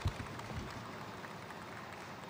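Faint outdoor street ambience: a steady low hiss of distant traffic, with a couple of soft low thumps at the start.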